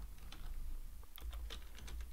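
A few faint keystrokes on a computer keyboard over a low steady hum, as code is typed.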